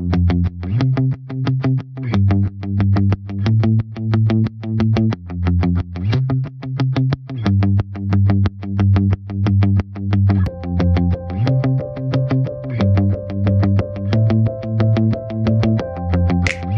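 Background music: an instrumental track with a fast, even beat and a bass line that moves every second or so. A higher melody comes in about ten seconds in.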